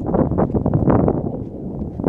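Wind buffeting a handheld camera's microphone, a loud, uneven noise.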